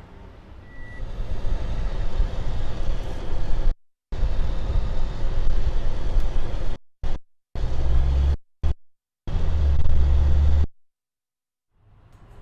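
Pickup truck running and driving off, a noisy low rumble broken by several abrupt cuts to silence.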